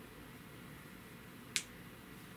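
Quiet room tone broken by a single short, sharp click about one and a half seconds in.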